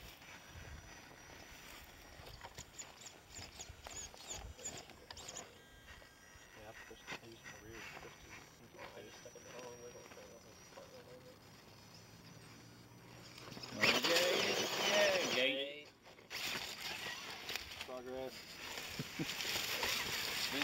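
Faint murmur of voices outdoors, then a louder stretch of voices and rustling noise from about fourteen seconds in, which breaks off abruptly near sixteen seconds and then resumes.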